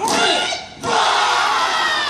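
A Māori kapa haka group shouting a haka chant in unison, men's and women's voices together. There are two loud shouted phrases, the second coming in a little under a second after the first.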